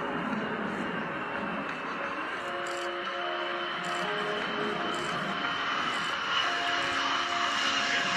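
Lockheed Martin F-22 Raptor's twin jet engines on landing approach with gear down: a steady jet roar with a high whine, swelling slightly toward the end. Quiet background music runs underneath.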